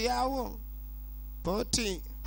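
Steady electrical mains hum under the soundtrack, with brief fragments of a voice at the start and again near the end.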